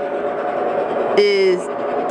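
Speech: a child saying one drawn-out word over a steady background hum.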